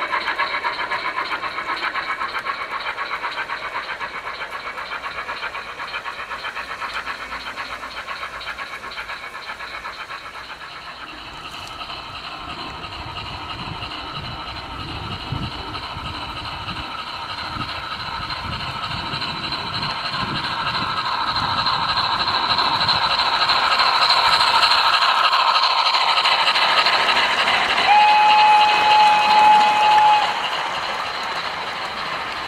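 O gauge model steam locomotives with DCC sound decoders chuffing steadily as they pass, with the low rumble of model wheels on the track growing louder as a train comes close. Near the end a model whistle sounds one steady note for about two seconds.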